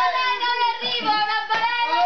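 A young woman's long, high-pitched scream, held for about two seconds with a slight dip in pitch near the end, with other voices faintly underneath. It is the playful shriek of someone in a water-balloon fight.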